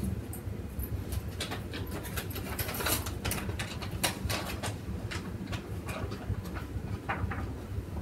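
A dog moving about and eating, making scattered light clicks and clinks, with its metal chain collar jingling. A steady low hum runs underneath.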